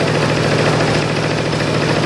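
An engine idling steadily with a low, even hum.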